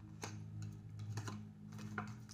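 Faint, scattered light taps and clicks of small handwritten paper cards being handled and picked up from a table, over a steady low hum.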